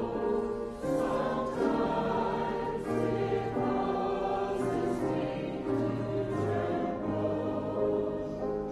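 A slow hymn sung with long held notes over a low held accompaniment.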